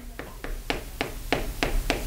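Chalk writing on a chalkboard: a quick series of sharp taps and clicks as each stroke of the chalk strikes the board, about five or six a second.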